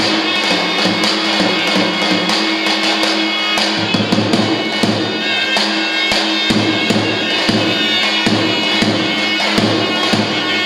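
Albanian folk dance music: a large double-headed drum (lodër) struck in a steady beat about twice a second, under a held, reedy melody on folk wind instruments.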